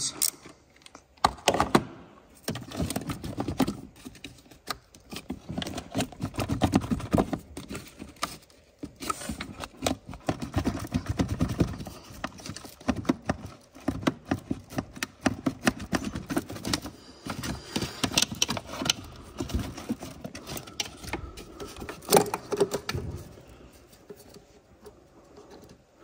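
The nut on a car battery's positive terminal clamp being undone with a nut driver, then the metal clamp and its red plastic cover worked off the post by hand: a long run of irregular clicks, taps and light rattles in bursts, with one sharp click about 22 seconds in.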